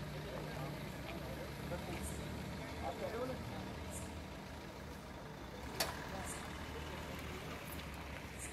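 A vehicle engine idling steadily under the indistinct chatter of a crowd, with one sharp click a little before six seconds in.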